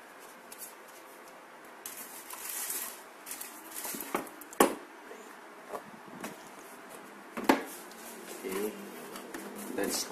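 Hands handling a cardboard box and its packaging, rustling and scraping, with a sharp knock about halfway and another about three quarters of the way in as the plastic propeller guards are set back in the box. A man's murmured voice comes in near the end.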